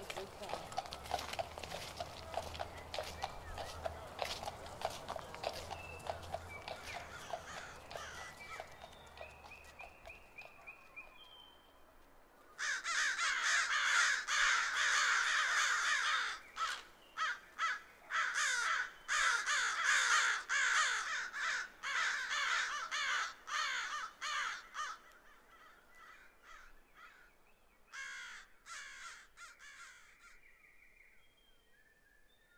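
A flock of crows cawing: a loud, dense chorus that starts suddenly about twelve seconds in and breaks up into scattered calls after about twenty-five seconds. Before it, a softer dense patter of clicks over a low hum.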